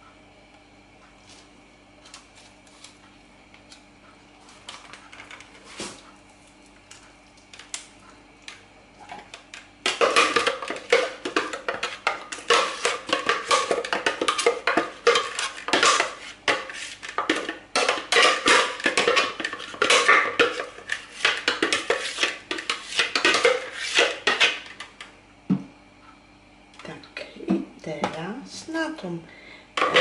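A utensil scraping and tapping inside the plastic bowl of a food processor as thick cheesecake batter is scraped out. It starts about ten seconds in as a dense run of quick scrapes and knocks and lasts about fifteen seconds.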